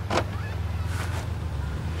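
Sports car engine idling with a steady low hum, and a short click just after the start as the automatic gear selector is shifted into gear.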